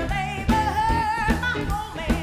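Live soul-jazz band performance: a woman singing a long, wavering sung line over acoustic guitar, electric bass and drums keeping a steady beat.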